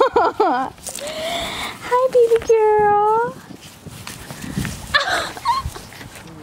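Two puppies play-fighting, with short yips, over a woman's high, wordless cooing: a wavering call at the start and a long drawn-out call in the middle.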